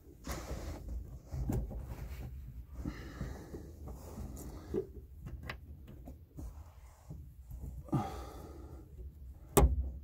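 Plastic push rivets being pressed by hand into the rear parcel shelf trim of a car: fumbling handling noise with scattered clicks and knocks, the sharpest click near the end.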